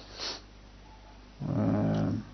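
A man's short breath, then a drawn-out hesitation filler, a held 'ehh', at a steady pitch for about half a second near the end.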